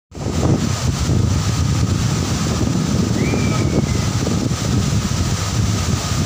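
Floodwater pouring out through a dam's open spillway gates and churning below them: a loud, steady, deep rush of water, with wind buffeting the microphone.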